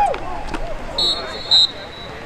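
Referee's whistle, two short, shrill blasts about half a second apart, the second louder, blowing the play dead after a tackle.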